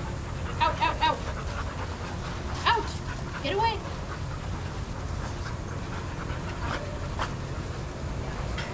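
Dogs giving a few short, high-pitched yips and whines: a quick run of three about half a second in, then a rising yelp and a short arching whine around three seconds, over a steady low rumble.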